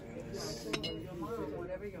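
A single light clink of glassware or china about three-quarters of a second in, over indistinct background voices.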